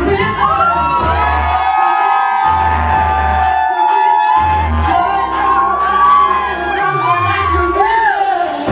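Dance music playing loud, with long held, sliding sung or lead notes over a pulsing bass that drops out briefly twice, and an audience whooping and cheering.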